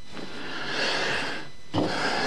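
A soft rubbing noise that swells and fades over about a second.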